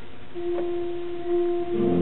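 A 1964 Shantz 38-rank pipe organ: a loud chord dies away into the room's reverberation, a single note is held on its own, and near the end full chords with deep pedal bass come back in.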